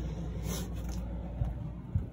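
Steady low machine hum inside a motorhome while its basement air conditioner runs, with a brief rustle about half a second in.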